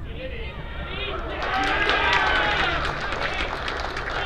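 Several voices shouting and cheering over a goal, building about a second and a half in and loudest around the middle, over a steady low rumble.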